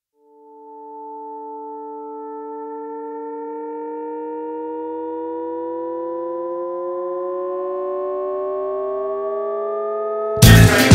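A sustained electronic chord of pure, steady tones that fades in and slowly swells, its main pitches gliding gradually upward while fainter tones slide downward across them: a synth riser build-up intro.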